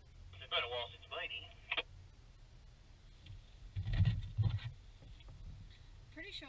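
A voice over a UHF CB radio, thin and narrow-toned, in short phrases between about half a second and two seconds in, over a low steady hum. A low rumble with a thump about four seconds in.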